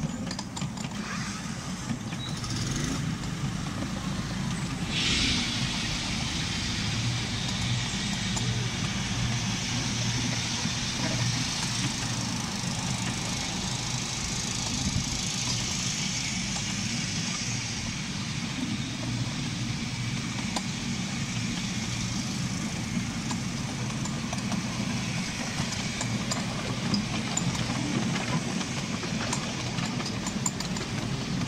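Miniature railway train running along its track, heard from an open passenger carriage: a steady low drone from the locomotive with the rumble and hiss of wheels on the rails.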